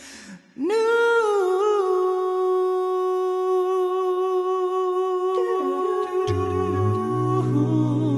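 A cappella voices humming a long held note that starts about half a second in, with deep bass voices joining under it about six seconds in.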